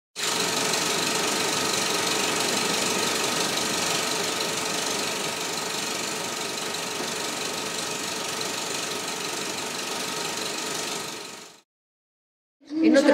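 A steady, dense, machine-like noise with a few faint steady tones running through it, dropping slightly in level about halfway and fading out shortly before the end.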